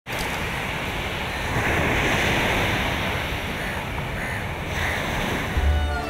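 Ocean surf: waves breaking and washing in, swelling about one and a half seconds in. Music with a deep bass comes in just before the end.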